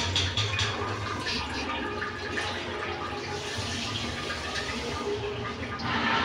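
Water running steadily in a small tiled room.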